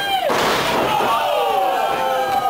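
A wrestler's body slamming onto the ring canvas about a quarter second in, with shouting voices over it.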